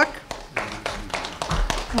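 A scatter of light, irregular taps and clicks.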